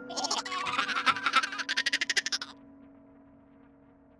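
A ghost sound effect: a fast, rattling pulse of sound lasting about two and a half seconds, standing for the sound the ghost woman makes. A low steady drone of background music runs under it and carries on after it stops.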